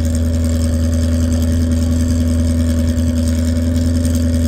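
A vehicle engine idling: a steady, unchanging low drone with an even hum above it.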